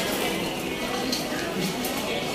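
Supermarket ambience: a steady wash of background noise with indistinct chatter of other shoppers.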